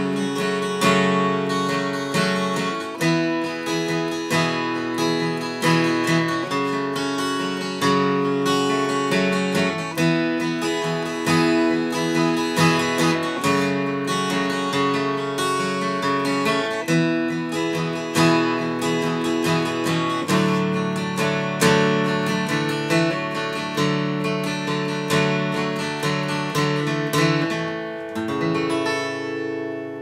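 Martin J-40 acoustic guitar played solo, with steady strummed chords in an instrumental ending. Near the end the playing tapers off and a last chord is left to ring and fade.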